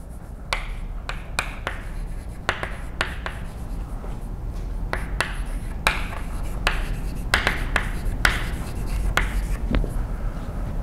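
Chalk writing on a blackboard: irregular sharp taps and short scratchy strokes as letters are written, a few each second, over a steady low hum.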